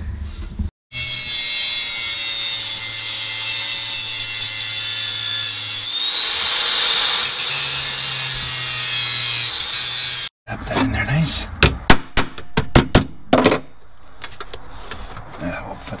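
Angle grinder grinding into the car's sheet-steel floor, a loud steady whine whose pitch rises about six seconds in as the disc bites. It stops after about ten seconds, and a run of sharp metal knocks follows.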